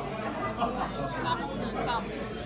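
Indistinct chatter of many diners talking at once in a busy restaurant dining room.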